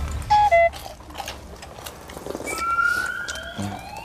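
Cartoon-style sound effects added in the edit. Two quick beeps, the second lower than the first, sound about a third of a second in. Then slow rising whistle-like glides climb through the second half.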